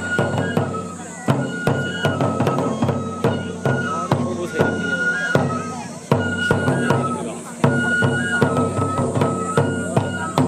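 Nenbutsu kenbai folk-dance music: a large taiko drum beaten with sticks in a repeating rhythm of several strokes a second, under a high flute melody that steps between a few held notes.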